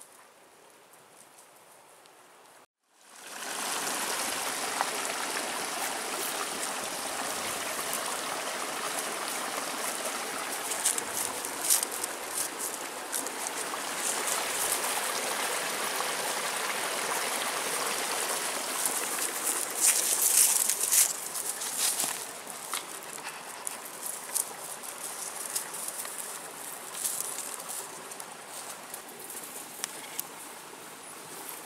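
Creek water running, a steady rushing hiss that comes in abruptly about three seconds in. Sharp crackles of dogs moving through dry undergrowth stand out twice, around the middle and about two-thirds through, and the water sound eases a little after that.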